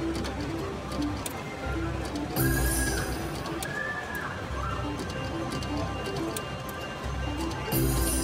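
Slot machine spinning its reels: a run of short electronic beeping notes and ticks plays over the spin. A louder spin jingle starts about two and a half seconds in and again near the end, as the next spin begins.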